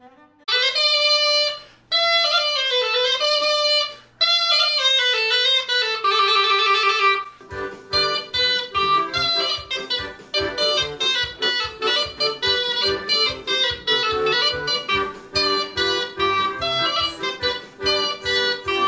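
Russian zhaleika, a single-reed hornpipe with a horn bell, playing a folk melody. The first few seconds hold three drawn-out phrases with sliding pitch; from about seven seconds in it switches to a quicker rhythmic tune over a steady beat.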